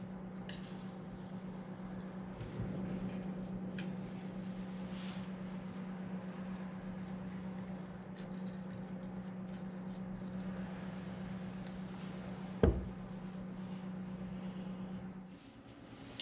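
A few short hisses of aerosol spray lubricant being sprayed onto a small boat's steering cables and rudder pivot, over a steady low hum. One sharp knock about three-quarters of the way through.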